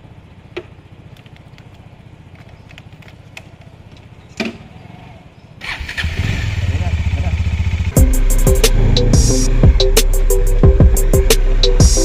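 A Kawasaki motorcycle engine starting a little past halfway and running at idle. About two seconds later loud background music with a steady drum beat cuts in suddenly and covers it.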